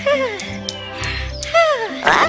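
Cartoon snoring from a character asleep inside a box: a low rumbling snore followed by a falling whistle on the out-breath, twice, over background music.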